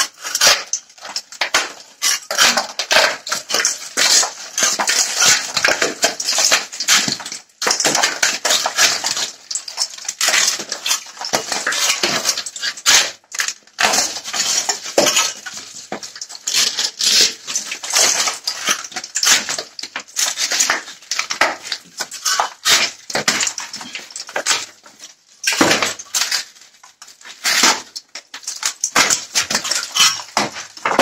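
Glued-on expanded polystyrene insulation, cut into strips together with its reinforcing mesh and filler coat, being levered off a wall with the blade of an old hand saw. It makes continuous irregular scraping, crunching and cracking as the foam and plaster tear away, with a few brief pauses.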